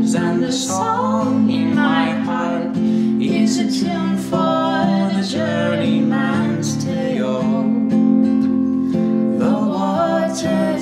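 Acoustic guitar playing a slow folk accompaniment while a man and a woman sing together.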